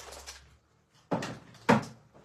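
A short rustling noise about a second in, then a sharp, louder knock near the end, like something being handled and set down.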